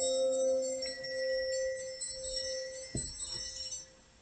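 Chime-like bell tones ringing on and slowly fading, with several high and low tones sounding together, dying away just before the end. A soft knock sounds about three seconds in.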